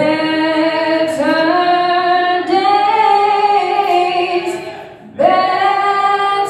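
A young woman's solo voice singing a gospel song into a microphone, without accompaniment, in long held notes. Near the end one phrase fades out, there is a short breath, and a new phrase begins.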